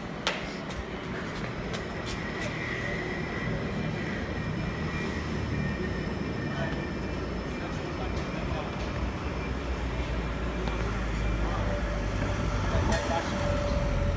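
City street traffic: a steady low rumble that grows louder over the last few seconds, with one sharp click just after the start.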